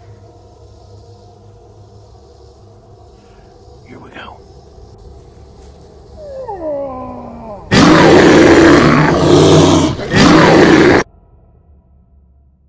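A man yells with his voice sliding down in pitch. Then comes a very loud, distorted bear roar in two bursts, a long one and a shorter one, which cuts off abruptly.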